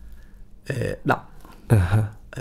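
A man speaking in short voiced syllables, with a brief pause at the start.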